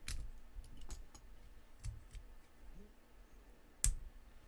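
Plastic Lego bricks clicking as pieces are handled and fitted onto a model: a few separate sharp clicks, the loudest near the end.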